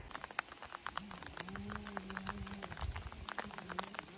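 Faint outdoor sound: scattered light ticks, with a low, drawn-out steady tone from about a second in until near the end.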